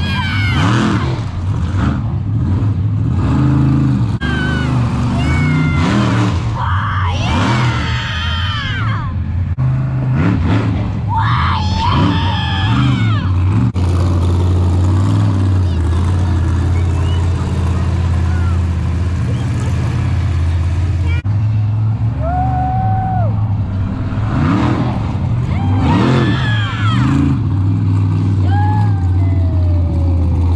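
Raminator monster truck's engine running loud and revving as the truck jumps and drives over the crushed cars, with people's voices and shouts rising above it at times.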